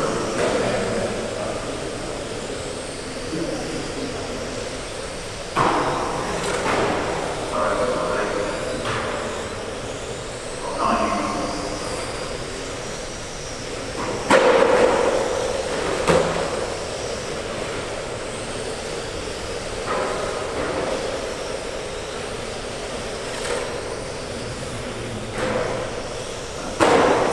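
Steady background noise of electric 1/12-scale GT12 RC cars racing on a carpet track in a large hall. Indistinct voices echo in the hall, coming and going every few seconds, loudest about halfway through.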